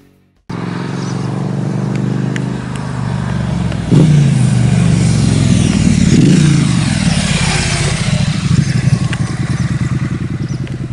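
2018 Triumph Street Twin's 900cc parallel-twin engine, through an aftermarket Vance and Hines exhaust, as the motorcycle rides up and past. The engine note starts suddenly about half a second in, grows loud about four seconds in, falls in pitch as the bike goes by, and ends in an uneven pulsing beat.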